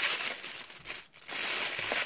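Tissue-paper wrapping crinkling and rustling as a packet is handled, with a short lull about a second in.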